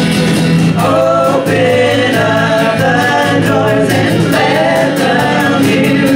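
A live worship band playing a song with a steady beat: several voices singing together over acoustic guitar, ukulele and drums.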